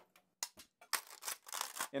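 White plastic 3D print being broken free of its flexible build plate and support pillars: a few short clicks, then about a second of dense crackling and snapping.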